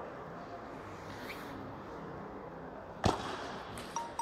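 One sharp crack about three seconds in, a table tennis ball struck hard by a paddle, with a smaller click just before the end, over the steady background noise of a large hall.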